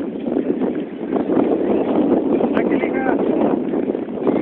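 Wind rumbling on the microphone at a soccer field, with faint, indistinct shouts of players and spectators.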